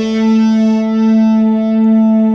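Electric guitar holding a single long note, the A at the seventh fret of the D string that ends a short, mostly pentatonic lick. The note rings steady with a full set of overtones.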